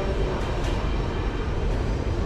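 Steady ambient noise of a busy indoor public concourse: a constant low rumble with a wash of indistinct background noise.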